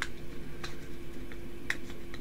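A few sharp plastic clicks from hands handling and opening a large rigid plastic card top loader held shut with tape.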